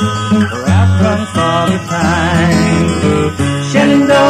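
Country-style song with acoustic guitar accompaniment; a wavering melody line rises over it about two seconds in.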